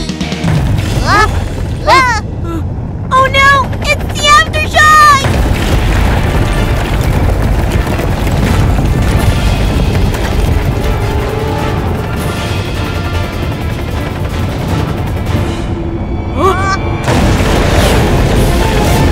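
A few short swooping cartoon squeals, then a long, low rumble of a building collapsing in an earthquake, with music underneath. More squeals come near the end.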